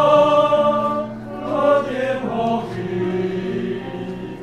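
Mixed church choir singing a hymn in several parts: a held chord fades about a second in, then a new phrase begins.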